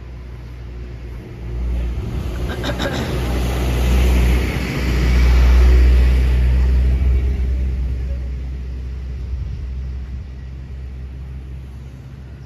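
A road vehicle passing: its engine and tyre noise swell to a peak about halfway through and then fade away, over a steady low engine hum.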